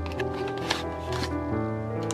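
Background music, with the rustle and light clicks of a paperboard sleeve sliding off a plastic-cased makeup compact.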